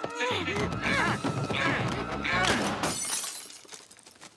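Grunts and shouts of two people struggling, over a dense scuffling din, with a loud crash and shatter about two and a half seconds in, after which it dies down.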